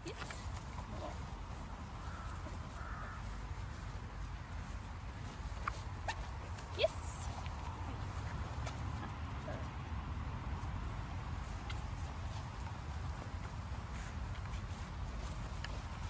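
Steady low rumble of wind buffeting the microphone. A few short, rising squeaks come through about six to seven seconds in.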